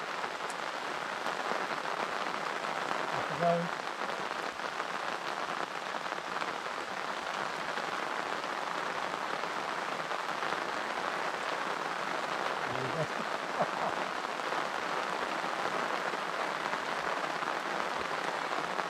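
Heavy rain falling steadily in a downpour, an even hiss that does not let up.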